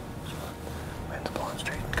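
A man speaking in a low whisper.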